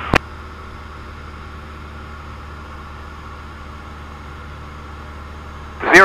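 Steady drone of a Cessna 172 Skyhawk's piston engine and propeller in level flight, heard faintly through the cockpit intercom recording.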